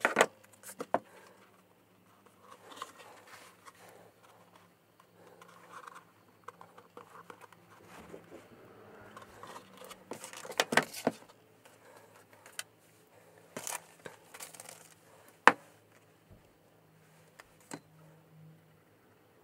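Steel scissors and a cloth-covered slipcase handled on a cutting mat: a few sharp clicks and taps, chiefly at the start, about ten seconds in and once more near the end, with soft rustling of book cloth and board between.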